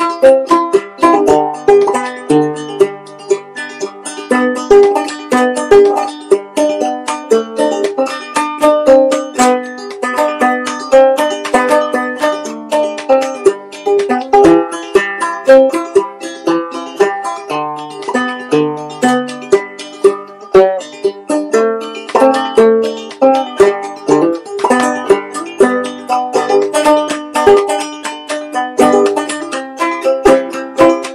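Homemade five-string open-back banjo, built from car parts with a Dynaflow tone ring, played as an instrumental tune in clawhammer style: a steady, unbroken stream of plucked notes with a bright, ringing attack.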